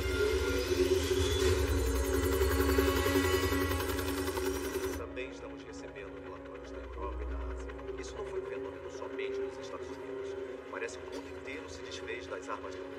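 Film soundtrack: background score with layered sound effects over a steady low hum. About five seconds in, the bright upper sound cuts off suddenly, leaving scattered short clicks over the hum.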